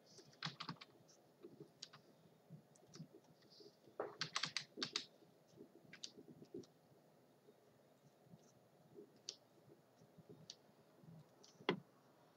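Faint, irregular clicks of computer keyboard keys being pressed. There are short runs of presses about half a second and four seconds in, and a sharper single click just before the end.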